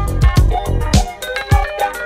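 Instrumental funk-flavoured deep house edit: a steady kick drum and bass line under percussion, with no vocals.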